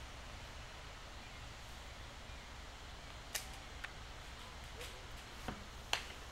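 Faint, steady outdoor background in woodland, with one sharp knock about three seconds in and a few fainter ticks after it.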